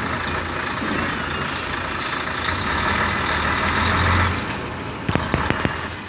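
Heavy vehicle engine running steadily, its low drone swelling between about two and four seconds in. A short hiss of air comes about two seconds in, and a quick run of sharp clicks near the end.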